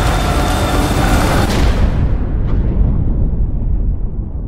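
Loud cinematic explosion-like roar from a film trailer's sound mix. About halfway through, the high end dies away and a deep low rumble remains.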